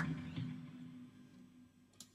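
A low chord from the band's instruments ringing out and fading away over about a second and a half, with a single click near the end.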